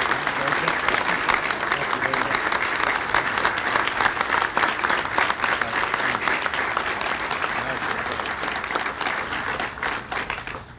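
An audience applauding steadily, the clapping thinning slightly toward the end.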